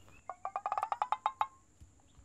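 An animal's rapid chattering call: a quick run of about a dozen short notes over a second, ending on a brief held note.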